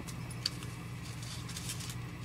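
Steady low electrical hum, with faint rustling and a small click about half a second in as a paper CD sleeve is handled.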